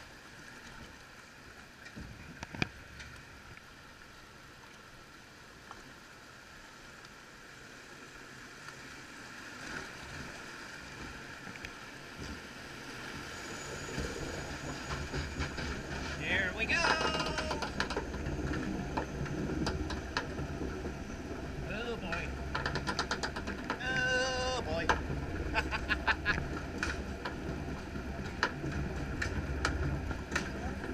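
Log flume boat floating through its water channel, with a soft wash of water. About halfway through a louder low rumble with fine clicking sets in as the boat is hauled up the lift hill. Two short high-pitched voice-like cries rise over it, a little past halfway and again near the three-quarter mark.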